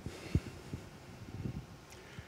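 Low, dull thumps over a faint rumble, with one stronger thump about a third of a second in.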